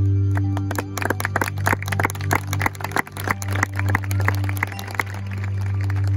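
High school marching band playing: a rapid run of percussion strikes with short pitched notes over a steady low sustained tone. The strikes stop about five seconds in, leaving the low tone.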